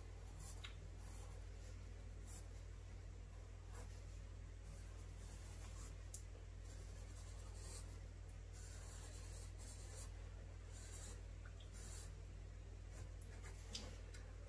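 Graphite pencil scratching faintly on sketchbook paper in short, irregular shading strokes, over a low steady hum.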